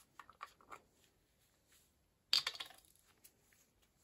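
A small plastic pot of white gel paint handled and opened: a few light clicks, then a sharper click and rattle a little over two seconds in.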